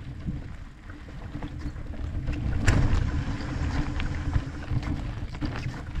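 E-mountain bike rolling downhill on a dirt and grass trail: steady low tyre rumble and wind buffeting on the action camera's microphone, with frequent small rattles and knocks from the bike over bumps and one louder knock a little under halfway through.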